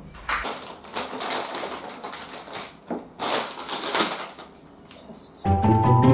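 Plastic snack wrappers crinkling and rustling as they are handled on a table, in irregular crackles. Music with plucked strings comes in near the end.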